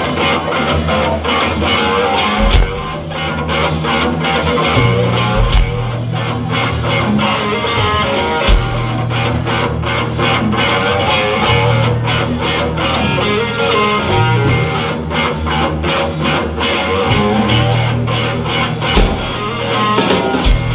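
Live blues-rock trio of electric guitar, electric bass and drum kit playing, with steady drum hits under sustained bass notes.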